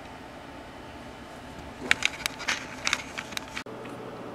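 Low steady bench hum, then a cluster of light, sharp clicks and taps over about a second and a half: small handling noises at the workbench around the IF transformer and its tuning capacitors. Near the end the background cuts abruptly to a steadier hum.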